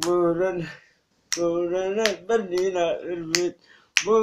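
A man's voice chanting a rhythmic run of "boom" syllables as a vocal beat, with several sharp finger snaps keeping time. There is a short break after about the first second.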